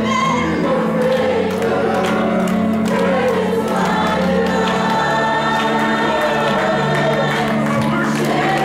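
Mixed youth choir singing a gospel worship song in full voice over instrumental accompaniment with sustained bass notes.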